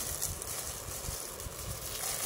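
Soft rustling of a cotton shawl being handled and lifted off a cloth-covered table, over a low background rumble.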